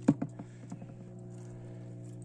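A few short knocks and clicks in the first second, the first the loudest, over a steady low hum.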